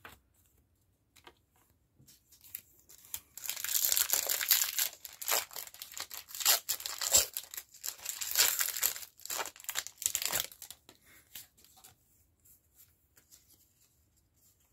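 Foil booster-pack wrapper being torn and crinkled, a run of sharp crackling that starts about three seconds in and stops about three and a half seconds before the end.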